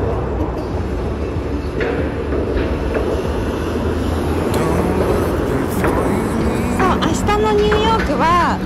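City street traffic: cars driving past on an avenue, a steady rumble of engines and tyres. Near the end a voice begins.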